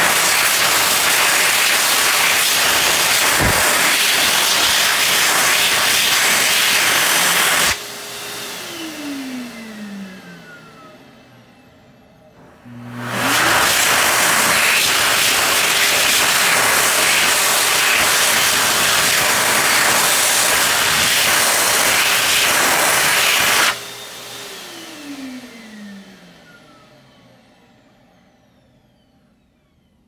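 Excel Dryer Xlerator hand dryer blowing a loud, steady rush of air, triggered by hands under its sensor; about eight seconds in it cuts off and its motor winds down in a falling whine. About thirteen seconds in it starts again, runs for about eleven seconds, then cuts off and winds down again with the same falling whine.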